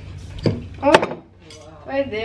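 Kitchen clatter while coffee is being made: a dull knock about half a second in and a sharp clink of crockery or cutlery about a second in, with brief bits of voice.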